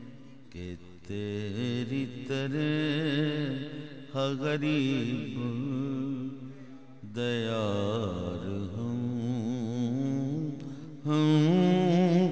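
A man's voice singing an Urdu devotional poem in the chanted style of naat recitation, holding long notes that waver and ornament, in several phrases with short breaths between them.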